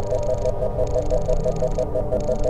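Electronic sound-effect drone: a steady low rumble under a pulsing tone, about seven pulses a second, with a hiss that drops out twice.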